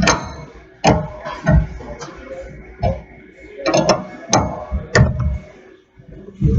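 Sharp metal clinks and clanks of a wrench working a lug nut on a steel wheel hub, irregular and about one a second, some ringing briefly. The nut is being tightened to pull a new lug stud back into the hub.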